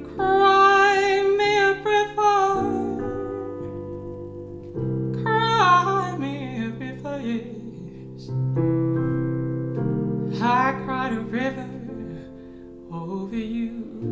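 A woman singing a slow jazz ballad over held chords on a digital keyboard, sung on purpose without enough breath support. She sings about four short phrases with a wobbling pitch, and the chords sustain and change in the gaps between them.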